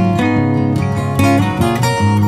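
Background music on acoustic guitar: plucked notes following one another in a steady flow.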